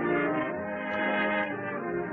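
Dance-band music led by brass, playing sustained chords and melody notes.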